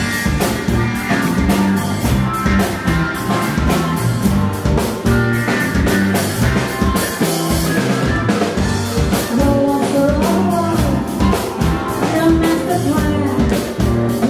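Live band playing a rock song: a drum kit keeps a steady beat under strummed acoustic guitar and electric bass, with singing in parts.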